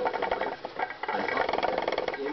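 Hamster's claws scrabbling on the plastic of its exercise wheel, a fast, even rattle of scratches as it digs at the plastic.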